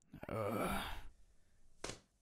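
A man's breathy sigh lasting under a second, followed near the end by a short click.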